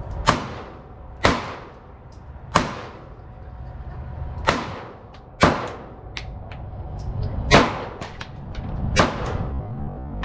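Semi-automatic pistols firing, about seven loud shots spaced irregularly roughly a second apart, each with a short echo. Fainter shots from neighbouring shooters fall between them.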